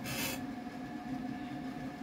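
A pause in the preaching, filled by a faint steady hum of a few held tones, with a short hiss in about the first half second.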